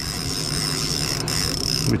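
Fishing reel's clicker buzzing steadily and high-pitched as a hooked steelhead pulls line off the reel, stopping just before the end.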